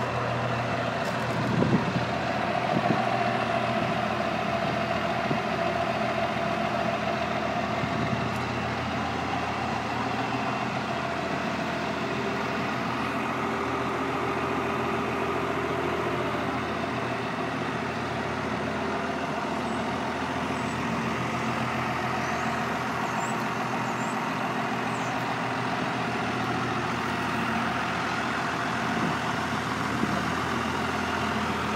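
12-valve Cummins inline-six diesel in a 1978 Chevy K60 truck idling steadily.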